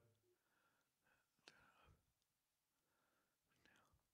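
Near silence, broken by two very faint whispered murmurs, one about a second and a half in and one near the end.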